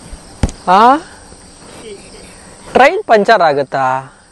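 A man's short voice sounds, a rising one about a second in and a quick run of them near the end, over a steady high-pitched drone of insects.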